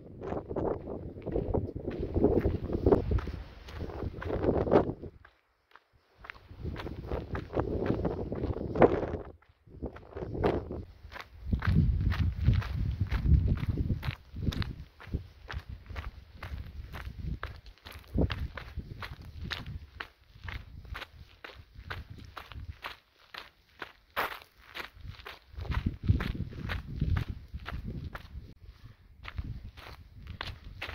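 Footsteps of a hiker walking on a dirt and gravel trail, a steady run of crunching footfalls. Wind rushes over the microphone in the first half, and the sound drops out briefly a few times.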